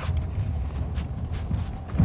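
Cabin noise of a Mercedes-Benz GLA 250e plug-in hybrid running on electric power over a bumpy, wet road: a steady low rumble of tyres and suspension with a few faint knocks. No engine sound, and no creaks or rattles from the dashboard; the suspension is working quietly.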